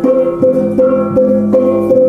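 Balinese gamelan music: tuned metal bars are struck in an even pulse of about two and a half strokes a second, each note ringing on until the next.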